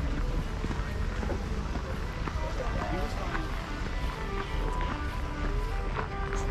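Street ambience: music and indistinct voices over a steady low rumble, with faint scattered ticks.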